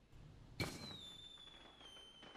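A single sharp strike about half a second in, followed by a high, chime-like ringing tone that slowly falls in pitch as it fades.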